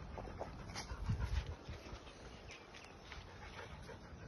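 Dog panting close by, with a brief low rumble about a second in.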